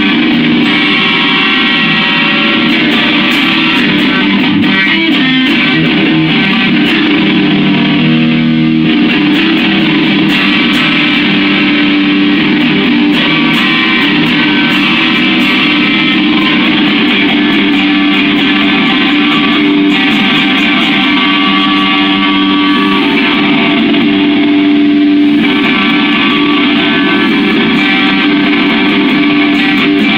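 Amplified solid-body electric guitar played continuously, loud and steady.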